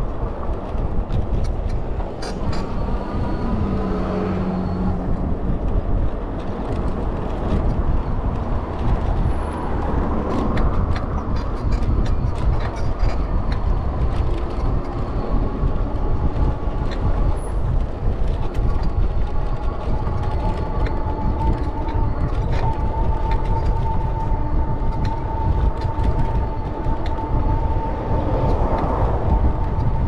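Wind rushing over the microphone and the rumble of tyres rolling on an asphalt path, heard from a moving bicycle. A steady high tone comes in a little past halfway and holds.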